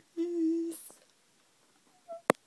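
A woman humming one short, steady note through pursed lips for just over half a second, ending in a brief breathy hiss.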